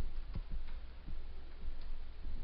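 Faint, irregularly spaced clicks of a computer keyboard being typed on, over a low steady hum.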